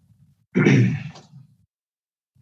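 A person clearing their throat once, about half a second in.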